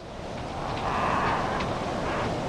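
A rushing, wind-like noise, like surf or a gust, swells up from silence over the first second and then holds steady, with a few faint short high ticks in it.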